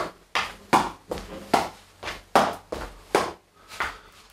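A footbag kicked over and over with the inside of the foot, alternating right and left, along with the footfalls of shoes on a wooden floor. Together they make a quick run of sharp thuds, about two to three a second.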